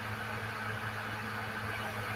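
Steady low hum with an even hiss and no other sound.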